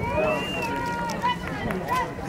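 Overlapping voices of several people talking at once, over a low murmur of background noise.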